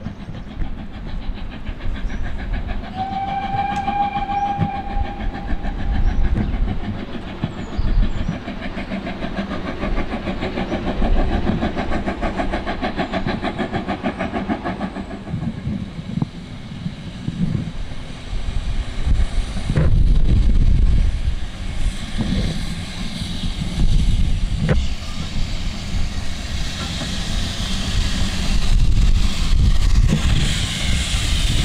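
BR Standard Class 2 2-6-0 steam locomotive 78022 approaching under steam with rapid exhaust beats. It gives one whistle blast about three seconds in. At about the halfway mark the beats stop and it drifts in to a stop with wheel clicks on the rails and a hiss of steam near the end.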